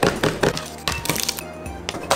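Cleaver chopping garlic on a plastic cutting board: a series of quick, sharp knocks, over background music.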